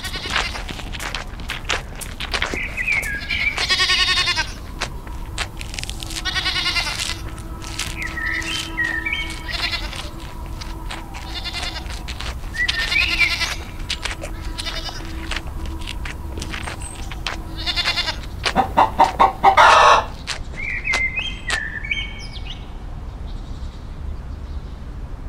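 Goats bleating, about five quavering bleats spread out, the loudest near the end. Short bird chirps come in between them.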